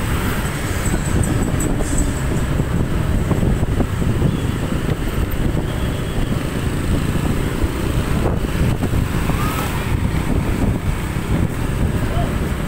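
Wind buffeting the microphone of a moving motorcycle, a steady low rumble, mixed with the running engines of the motor scooters riding close ahead.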